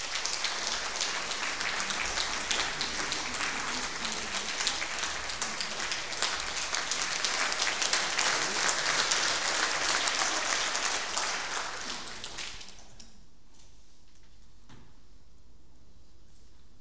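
Audience applauding with dense, steady clapping that fades out about twelve to thirteen seconds in.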